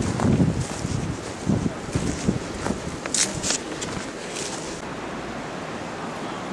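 Wind rumbling on the microphone outdoors, with faint voices in the first second or two and a few short scuffs about three seconds in, settling to a steady hiss.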